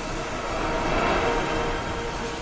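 Logo intro sound effect: a steady, noisy rumble with a few faint held tones, swelling slightly about a second in.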